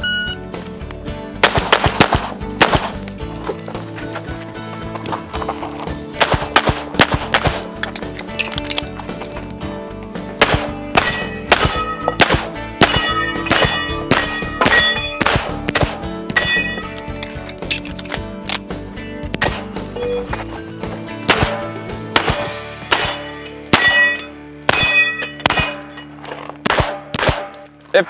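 Rapid strings of shots from a 1911 pistol firing through a practical shooting stage. In the first part the shots stand alone; from about the middle onward many are followed by the ringing ding of steel plates being hit. Background music plays underneath.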